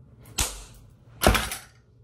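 Two sharp impacts a little under a second apart, the second louder, each dying away quickly.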